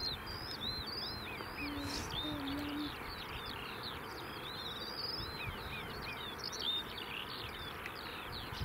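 Many small birds chirping and singing outdoors, their short arched and trilled notes overlapping throughout, over a steady low background noise.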